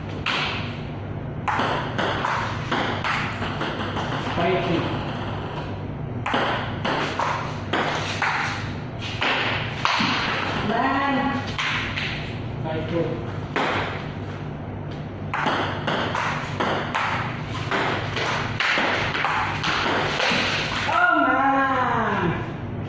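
Table tennis rally: the celluloid/plastic ball clicking off paddles and the table again and again in quick, uneven succession, with short shouts of voices between points.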